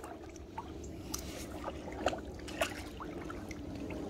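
Lake water lapping and trickling around a soaked plush toy floating in the shallows, with a few small splashes about one, two and two and a half seconds in.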